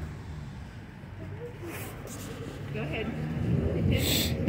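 Faint voices of people talking, not close to the microphone, over a steady low background rumble; a couple of brief rustling hiss sounds come near the middle.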